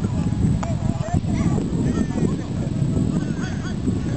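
Beach tennis paddles striking the ball in a rally: sharp pocks, two of them about a second in, over a steady low rumble, with high calls and voices.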